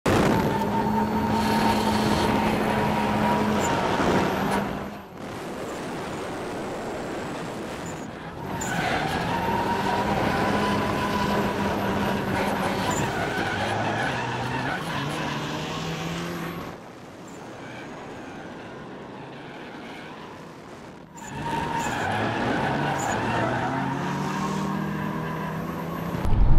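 Drift cars' engines revving hard with tire squeal, heard in several short clips that cut off abruptly every few seconds. The engine note climbs and falls in steps as the throttle is worked.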